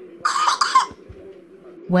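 A man's short cough, two quick bursts about a quarter second in, over a faint steady hum.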